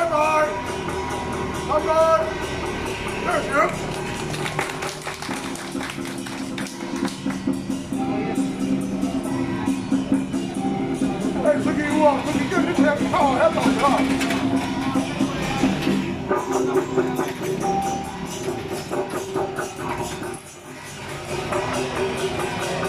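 Temple procession music: rapid percussion with steady held tones, and voices calling out over it near the start and again about halfway through. The sound drops briefly near the end.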